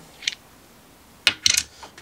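A few light metal clicks and a clink, about a second and a half in, as a small red copper RDA atomizer is unscrewed from its threaded stand.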